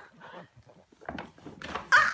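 A plastic shopping bag crinkling and rustling as a baby moves about underneath it, with a short loud vocal sound from the baby near the end.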